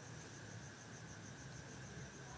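Faint, high-pitched, evenly pulsing trill of an insect over quiet room tone.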